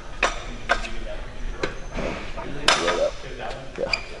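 Tricep dip machine being worked, giving a handful of sharp metal knocks and clanks spaced irregularly, the loudest about two and a half seconds in.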